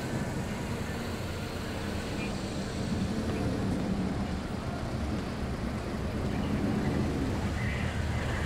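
Street ambience: a steady low rumble of vehicle traffic, with faint indistinct voices in the background.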